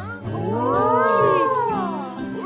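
Several cartoon children's voices drawing out one long reaction together, rising and then falling in pitch, over background music.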